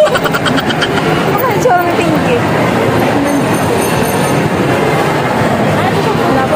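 Steady din of a busy shopping mall heard from a moving escalator: indistinct chatter over a continuous rumbling escalator noise.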